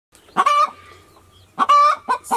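Broody hen calling twice, two short pitched calls about a second apart.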